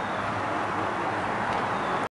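Steady outdoor background noise, an even hiss with no distinct events: open-air ambience.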